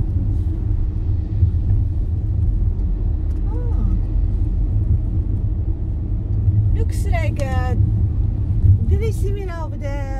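Steady low rumble of a car's engine and tyres, heard from inside the cabin while driving. People talk briefly a few times over it, most clearly in the second half.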